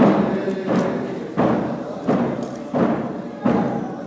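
A drum struck in a steady beat, six strokes about every two-thirds of a second, ringing in a reverberant hall, with group singing faintly underneath.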